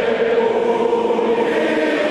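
Choral music: many voices singing long, held notes at an even level.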